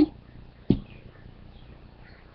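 A single sharp knock or tap about two-thirds of a second in, over a faint steady background hiss.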